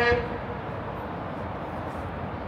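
A loud horn holding one steady note cuts off just after the start. After it there is only a steady, even background hiss of outdoor noise.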